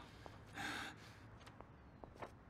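A man's short, audible breath, a sharp exhale lasting about half a second near the start, followed by a few faint small clicks of papers being handled.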